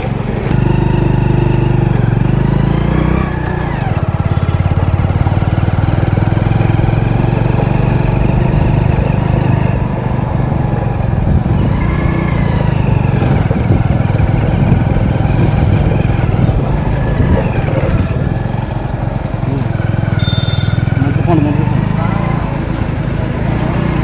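A motorcycle engine running steadily while riding along a road, its pitch rising and falling every few seconds with changes of speed.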